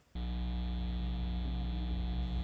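A steady low drone with many overtones starts abruptly just after the start and holds at an even level, like a sustained buzzy musical note used as underscore.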